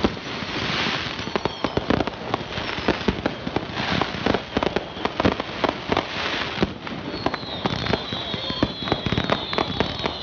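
Fireworks going off in rapid succession: a dense run of sharp bangs and crackling bursts, with high whistles that fall in pitch at the start and again in the second half.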